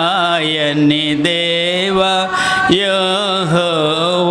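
A man singing a Christian devotional song in Telugu at a microphone, holding long notes with a wavering pitch and a short break partway through.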